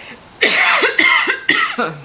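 A woman coughing three times in quick succession, the coughs about half a second apart.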